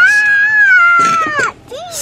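A long, high-pitched voice sound, a held squeal with no words, lasting about a second and a half at nearly one pitch and dropping away at the end, then a short rising call.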